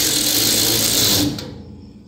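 WorkPro 3/8-inch drive cordless ratchet's motor running under the trigger, spinning a bolt into a sheet-metal frame, then stopping about a second and a half in.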